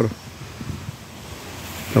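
Wind blowing across the microphone: a steady, faint rushing noise that swells slightly near the end.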